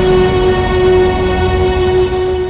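Dramatic background score from the serial: a held, steady note over a low rumble.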